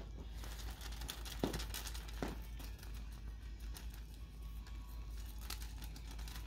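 Quiet rustling and crinkling of a feather wand toy as kittens bat at it, with scattered light clicks and two soft knocks close together about two seconds in.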